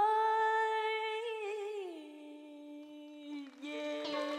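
A solo singing voice holding a long wordless note, which slides down in pitch about a second and a half in and is held at the lower pitch, growing quieter.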